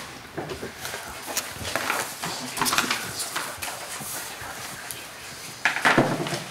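Sheets of paper rustling and being handled on a table, with soft knocks and scrapes; the loudest rustle comes near the end as a sheet is lifted.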